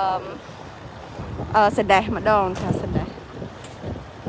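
Wind buffeting the microphone as a steady rush, with a person talking briefly at the start and again from about one and a half to three seconds in.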